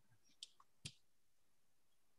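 Near silence with two faint, short clicks, about half a second and just under a second in.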